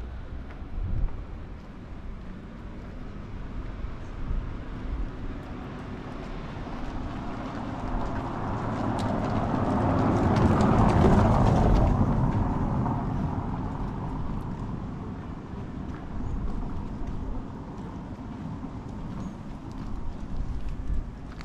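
A car driving slowly past close by on a cobbled street: tyre rumble on the cobbles grows louder, is loudest about ten to twelve seconds in, then fades away.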